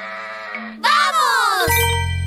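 A cartoon goat's voiced bleat: one loud, wavering, falling call about a second in. Cheerful children's music with a steady bass starts near the end.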